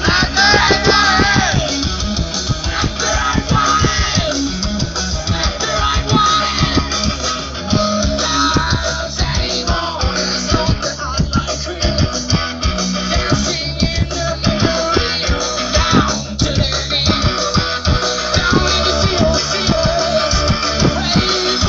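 Rock band playing live: electric guitars, bass guitar and steady drum hits, loud and continuous, heard from within the crowd.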